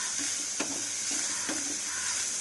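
Goat liver pieces and onion frying in a non-stick pan with a steady sizzle, while a spatula stirs them, scraping across the pan a few times.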